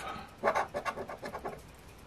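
A plastic scratcher scraping the coating off a lottery scratch-off ticket on a wooden table, in a quick run of short strokes that starts about half a second in and lasts about a second.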